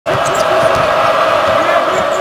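Basketball being dribbled on a hardwood court, a few bounces a second, under steady arena crowd noise.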